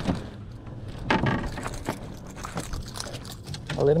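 Scattered light knocks and a faint rattle of lure hooks as a freshly landed small striped bass flops on the boat deck with the lure still hooked in it, over a steady low rumble.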